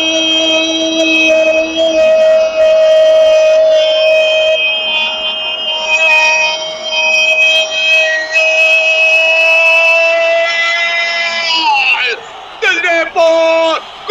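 Radio football commentator's long held goal cry, one unbroken high-pitched shout of about twelve seconds that drops in pitch as his breath runs out, followed by short shouted words near the end.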